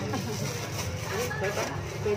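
Faint, brief snatches of people talking over a steady low hum, like an engine running.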